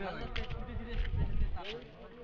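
Faint, indistinct speech over a low rumble that drops away near the end.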